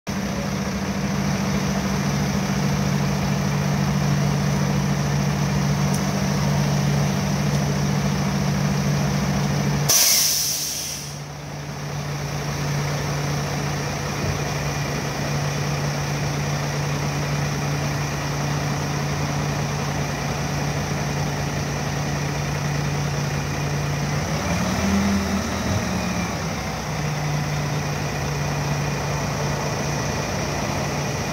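Diesel engine of a 2007 Sterling dump truck running steadily while its hydraulic hoist tips the dump box up. About ten seconds in there is a short, loud hiss, after which the engine note drops slightly. There is another brief change in the engine sound a few seconds before the end.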